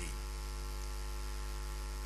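Steady electrical mains hum with a faint hiss, a low drone with a stack of even overtones that holds unchanged throughout.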